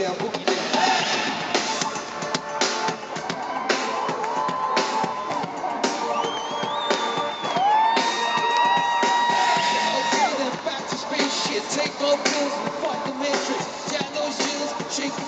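Live pop-rock band music with a driving drum beat, recorded from the stands of a stadium concert; a long held note rings out in the middle.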